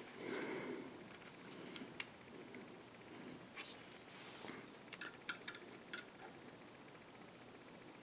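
Faint handling of a revolver and a small steel depth gauge: soft rubbing with a few light, irregular metallic clicks as the gauge is set against the barrel shroud.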